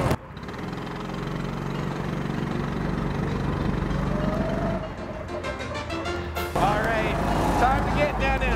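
Go-kart running on the track, a steady hum with a faint whine that rises a little about halfway through, then a rapid rattle about five seconds in.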